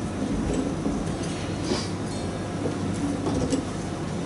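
Steady low room noise in a live music venue between songs: a rumbling hum from the stage and hall with faint murmur, a few small clicks and a brief hiss about halfway through.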